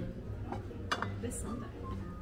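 A white ceramic bowl set back down onto a stack of ceramic bowls, clinking twice: once about half a second in and more sharply just under a second in.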